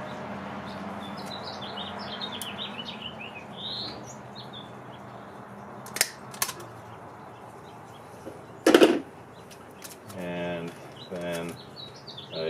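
A small bird chirping a quick run of short notes in the background, over a steady low hum. About halfway through come two sharp clicks from a small hand tool working tape, then a louder brief thump and rustle of handling, and a man's voice starts near the end.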